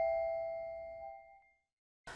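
The last bell-like chord of a short mallet-percussion intro jingle ringing out and fading away, gone about a second and a half in.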